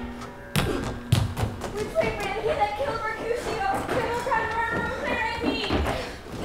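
Two thumps of feet on the stage floor about half a second and a second in, followed by several actors' voices calling out over music.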